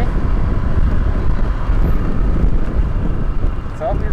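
Motor scooter ride through city traffic: a steady, heavy low rumble of wind and engine on the microphone, with road traffic around.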